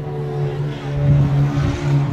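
A steady, engine-like drone runs throughout, with rumble and rustle from the phone rubbing against clothing as it is carried.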